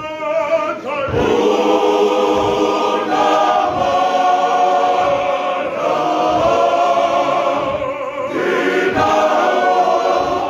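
Male voice choir singing in harmony, sustaining long chords in phrases with brief breaks between them.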